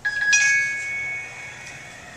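A bright, bell-like ringing: two struck tones about a quarter second apart, fading away over about a second and a half.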